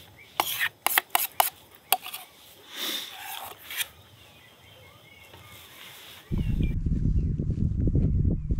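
Camp cooking gear being handled, a run of sharp metal clicks and clinks with a scrape partway through. About six seconds in it gives way to a loud low rumble of wind on the microphone.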